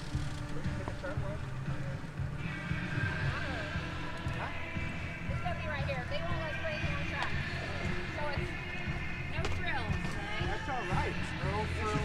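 Outdoor background of distant voices and music over a steady low rumble; the music and voices become clearer a couple of seconds in.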